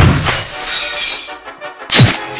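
A loud crash that starts just before and fades out over about a second and a half, with music playing beneath it.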